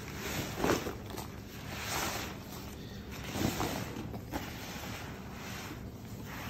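Sheets of stretchy latex rubber being handled and shifted, giving a few soft rubbing swishes, the strongest about half a second, two and three and a half seconds in.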